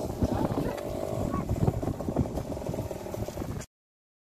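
Motorcycle engine idling with people talking over it. The sound cuts off suddenly near the end.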